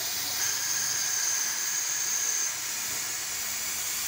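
Air-powered coolant vacuum-fill tool hissing steadily as compressed air runs through it, pulling a vacuum on the drained cooling system, with a high whistle over the hiss for about two seconds in the first half.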